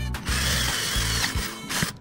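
Cordless drill boring holes through a thin copper tube held in a bench vise, stopping near the end, over background music with a steady beat.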